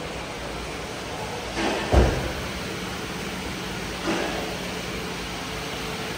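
Steady workshop background noise with a faint low hum, and one heavy thump about two seconds in.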